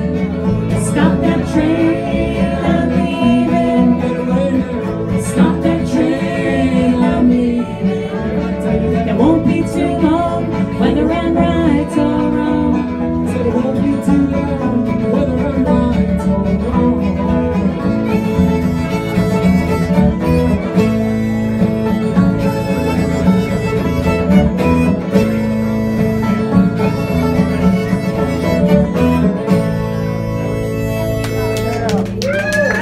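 Live bluegrass band playing: fiddle, banjo, acoustic guitar and electric bass, loud and continuous, with busier high picking in the second half.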